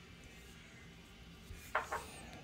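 Faint room tone, then a small knock and two quick clatters near the end as metal kitchenware is handled on a counter.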